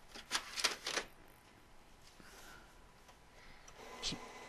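Epson WorkForce WF-7520 inkjet printer starting a print, with a quick run of mechanical clicks and ticks in the first second, then running quietly.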